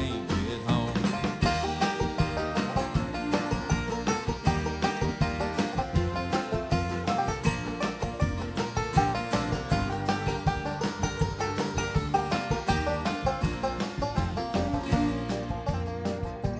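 A live bluegrass band plays an instrumental break without singing: a steady stream of picked banjo notes over fiddle, acoustic guitar, mandolin, upright bass and drums.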